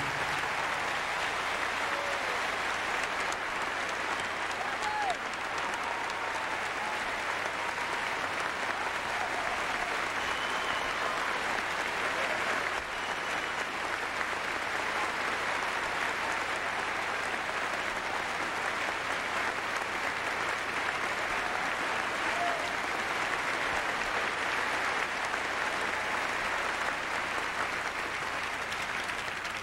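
A large theatre audience applauding, steady sustained clapping from a full house that holds at one level throughout.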